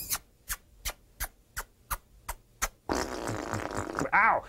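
Vocal sound effects made with the mouth: a regular run of sharp clicks, about three a second, then a rasping, hissing noise near the end.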